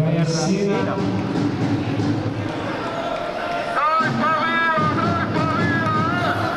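Basketball arena sound: steady hall and crowd noise, with a held, wavering tune rising over it about three seconds in.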